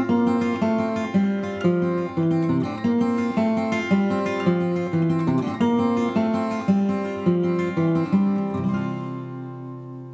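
Acoustic guitar playing a steady picked pattern of notes, about two a second, closing on a final chord near the end that rings out and fades away.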